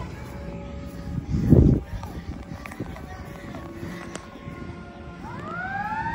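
A fire engine's siren winding up near the end, its pitch rising and then levelling off into a wail as the truck approaches. Earlier, about a second and a half in, a brief loud low rumble stands out over steady background traffic noise.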